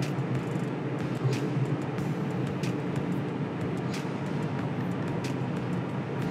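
Twin inboard engines of a large sportfishing boat running at idle, a steady low hum, as the boat is eased along with slow in-and-out-of-gear bumps while docking.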